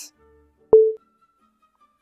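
A single short electronic beep about three quarters of a second in: a sharp click followed by a brief steady mid-pitched tone. It is the sound effect of a game-style dialogue box popping up.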